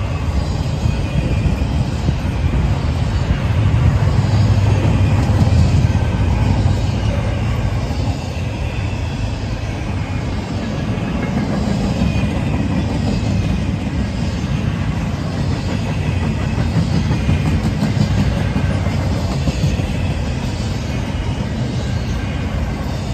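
Empty intermodal well cars and an autorack of a freight train rolling past: a steady rumble and clatter of steel wheels on rail, loudest about four to six seconds in, with faint high-pitched wheel squeal.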